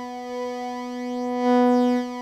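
Native Instruments Massive software synthesizer holding one sustained note through its Classic Tube distortion effect, growing louder about one and a half seconds in.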